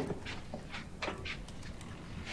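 Faint movement sounds of a person at a gramophone cabinet: a few soft taps and rustles, spaced through the first second and a half.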